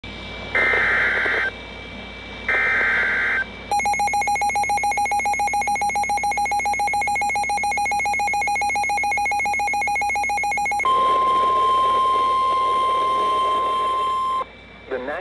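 Emergency Alert System signal from weather radio receivers: two short, screechy bursts of SAME header data, then a rapidly pulsing, harsh attention tone for about seven seconds, then a steady single alert tone near 1 kHz for the last few seconds, announcing a severe thunderstorm warning.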